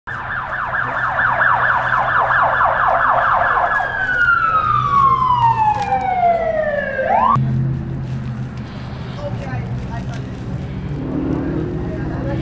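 Emergency vehicle siren in a fast warble that changes to a single long falling wail, then cuts off abruptly a little after halfway; a low steady hum remains after it.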